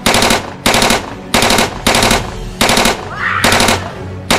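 Automatic gunfire in six short rapid-fire bursts, each under half a second, spaced about two-thirds of a second apart, over a steady music bed.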